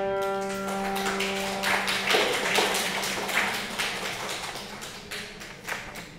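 The last piano chord rings and fades away over the first two seconds as an audience breaks into applause. The clapping thins out near the end.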